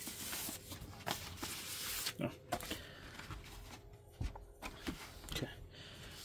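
Vinyl records in paper inner sleeves being slid out of a cardboard gatefold jacket and laid down: a rustling paper slide for the first couple of seconds, then scattered light taps and clicks of handling.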